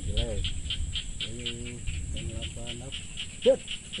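Insects chirping in a steady, rapid pulse, about five chirps a second, with several short pitched calls over it, the loudest about three and a half seconds in.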